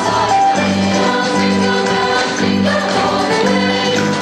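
A choir singing a song over instrumental backing with a steady beat.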